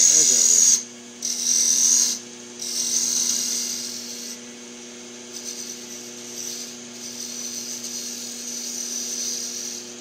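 Wood lathe running with a steady hum while a gouge cuts the spinning wooden spindle whorl. The cut hisses in three strong passes over the first four seconds, then goes on as lighter, quieter cuts.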